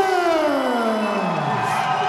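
A ring announcer's long, drawn-out call of a fighter's surname, falling in pitch over about a second and a half, over a cheering crowd.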